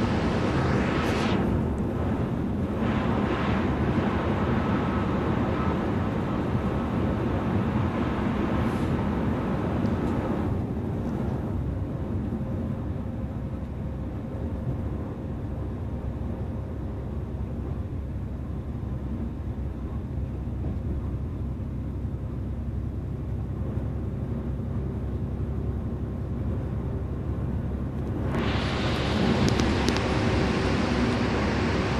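Inside an express coach at highway speed: a steady low drone of engine and tyres on the road. Near the end the road hiss turns suddenly louder and brighter as the bus enters a tunnel.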